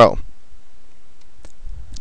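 A single faint click about one and a half seconds in, after a spoken word ends; otherwise quiet room tone.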